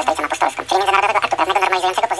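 A high-pitched voice talking without a break, its words unclear.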